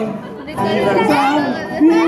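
Several voices chattering, after a brief lull at the start; no music is playing.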